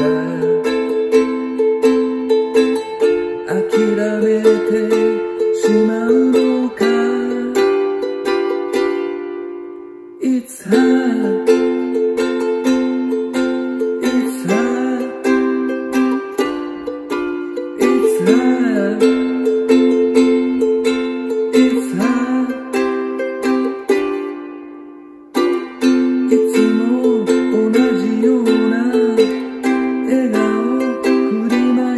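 Ukulele strummed in chords in a steady rhythmic pattern. Twice, about ten seconds in and again about twenty-five seconds in, a chord is left to ring and die away before the strumming resumes.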